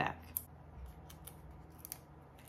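Cardstock pieces handled on a tabletop: a sharp click just after the start, then a few faint, light paper ticks and rustles, the last near the end.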